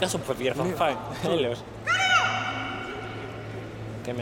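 Shouting voices: a few short calls, then one long drawn-out shout about two seconds in, over a steady low hum.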